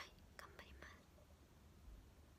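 Faint whispering or breathy mouth sounds from a young woman, a few short bursts in the first second, then near silence.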